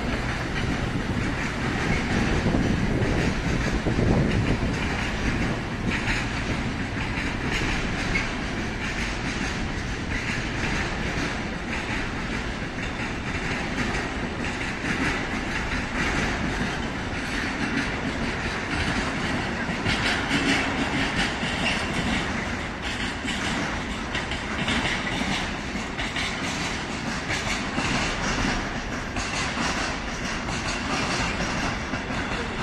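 Freight train of container wagons rolling through a station: a steady running noise of wheels on rails that lasts throughout.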